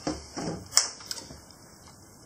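Light handling knocks of kitchen things on a granite worktop, with one sharp click about three quarters of a second in.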